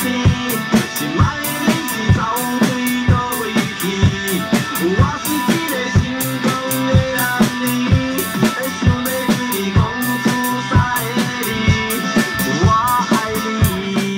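Acoustic drum kit played to a recorded backing song with guitar: a regular beat of drum and cymbal strikes over the steady music.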